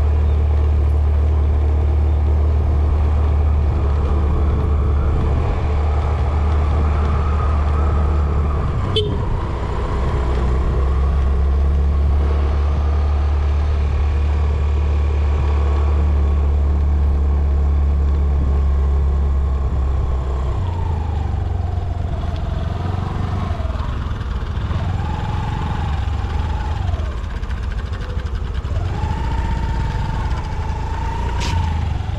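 Motorcycle engine running as the bike climbs a hill road, under a loud steady wind rumble on the microphone. In the last third the engine note falls and rises several times. There is a single sharp click about nine seconds in.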